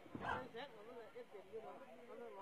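Faint whine-like voice sounds with a quickly warbling pitch, with a soft knock about a quarter second in.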